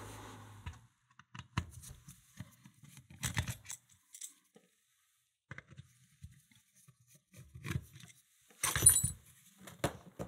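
Small metallic clicks and rattles of a screwdriver backing out the cover screws of a steel lever mortice lock case and the lock being handled, with a louder clatter about nine seconds in.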